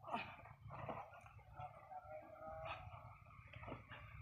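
Faint dog whining, with a couple of short barks near the start.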